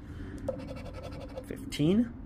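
A lottery scratch-off ticket being scratched in quick, short strokes, scraping the coating off a play spot, with a brief voice sound near the end.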